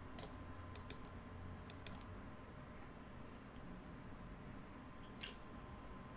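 Quiet computer clicking while stepping through moves of a chess game in analysis software: five sharp clicks in the first two seconds, mostly in quick pairs, and one more near the end, over a faint steady hum.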